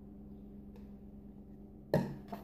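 A steady low hum, then just before the end a sharp knock as a plastic cup is set down on the countertop.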